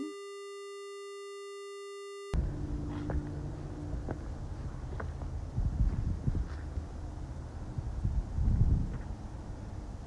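A steady, buzzy electronic tone that cuts off abruptly about two seconds in. Then comes handheld field sound: a low rumble of wind and handling on the microphone, with rustling and crunching of footsteps through dry leaf litter, loudest twice in the second half.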